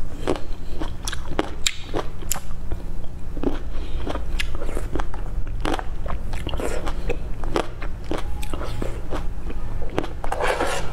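Close-miked chewing and biting of cherry tomatoes: a run of short, wet crunches and mouth clicks, over a steady low hum.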